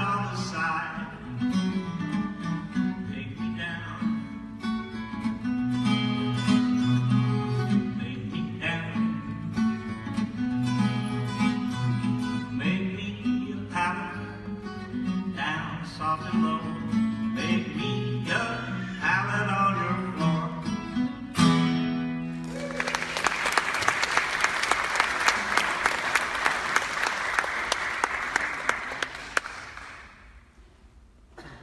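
Acoustic guitar playing a plucked tune over a steady bass line, ending on a final chord about two-thirds of the way in, then audience applause.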